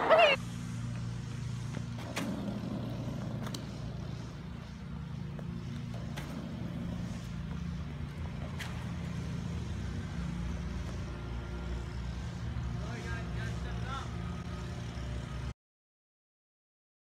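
A steady low motor hum, with a few sharp clicks and brief faint voices near the end; it cuts off abruptly.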